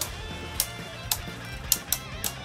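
Background music with about five sharp plastic clicks as two spinning Beyblade Burst tops clash against each other in a plastic stadium.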